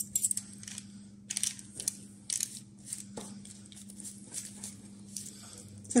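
Metal spoon scraping the soft roasted flesh out of aubergine halves on a parchment-lined baking tray: irregular soft scrapes and light clicks of the spoon against a metal spatula and the tray.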